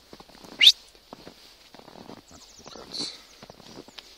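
Footsteps crunching in snow, with one loud, short, sharply rising high-pitched squeak or whistle about half a second in and a smaller high burst near the three-second mark.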